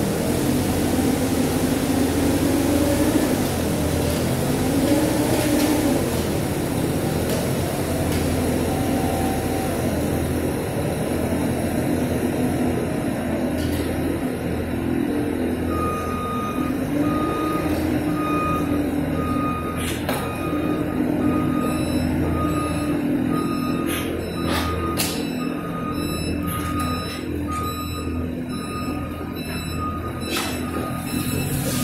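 Propane forklift's engine running, its pitch rising and falling as it manoeuvres, with a reversing alarm beeping steadily from about halfway through. A few sharp knocks come near the end.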